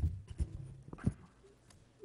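Papers rustling and being handled at a desk close to a microphone, with a few dull knocks in the first second, then it dies down.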